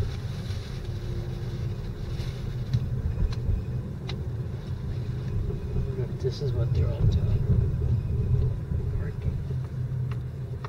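Car cabin noise while driving: a steady low rumble of engine and tyres on the road, with a few faint clicks.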